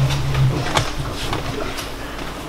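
A man's low, steady hum that stops about half a second in, followed by a few light clicks and knocks.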